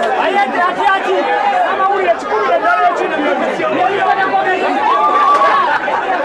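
Several people talking at once, their voices overlapping in a continuous chatter.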